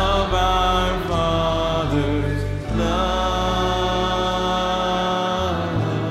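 Slow worship song: a man singing long held notes, one held for about two and a half seconds near the middle, over sustained low instrumental chords.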